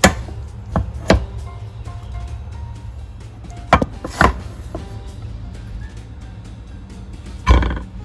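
A wooden slotted spatula knocking and scraping against a nonstick saucepan and plate as cooked rice is scooped out and served: about six sharp knocks, the last a longer scrape near the end, over background music.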